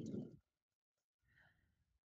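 A woman's short breathy exhale, like a sigh, at the start, then near silence.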